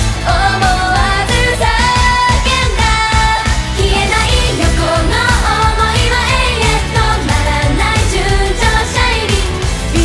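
Female idol group singing an up-tempo Japanese pop song live, voices over loud, steady backing music with a strong beat.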